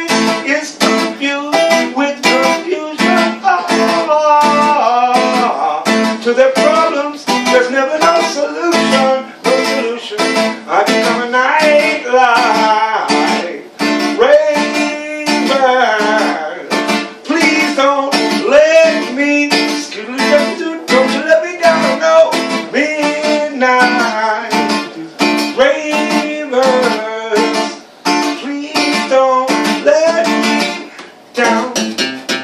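Acoustic guitar strummed in a steady rhythm, about two strokes a second, with a man singing over it.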